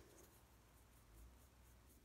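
Near silence, with faint, soft scratching of a paintbrush working dark paint onto a vinyl doll head.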